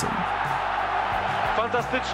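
Football stadium crowd cheering a goal: a dense, steady roar of many voices.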